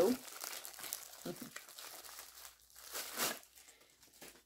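Thin clear plastic wrapping crinkling as an insulated bottle sleeve is pulled out of it. The crinkling is irregular, with a louder rustle about three seconds in.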